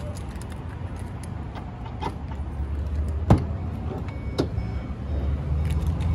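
Passenger van's door latch being worked open, with a sharp click about three seconds in and a smaller one about a second later, over a steady low rumble of passing road traffic.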